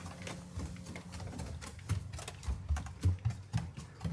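Bare feet going down wooden stairs: an irregular quick series of soft thumps and light clicks from the wooden steps.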